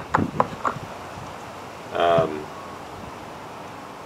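A quick run of small clicks in the first second as a cooler's threaded plastic drain plug is worked loose by hand.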